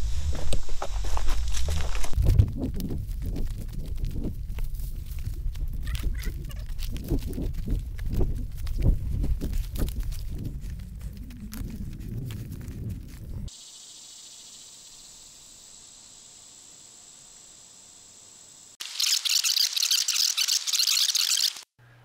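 Footsteps crunching and snapping through leaf litter and sticks on a steep wooded slope, with heavy rumbling of movement and rubbing on a body-worn camera microphone. After about 13 seconds this gives way to a faint steady high hiss, which turns into a louder high hiss for about three seconds near the end and cuts off suddenly.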